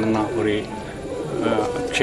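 A man speaking Malayalam, with pigeons cooing in the background.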